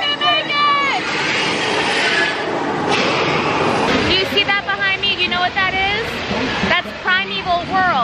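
Onboard soundtrack of the Dinosaur dark ride: high, sliding voice-like calls, with a rushing noise from about one to four seconds in.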